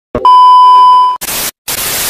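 Television test-pattern transition effect: a loud, steady high beep for about a second, then a hiss of TV static, broken once by a brief gap.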